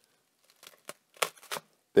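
Chef's knife cutting through the tops of garlic bulbs: a few short, crisp crackles of dry, papery garlic skin from about half a second to a second and a half in.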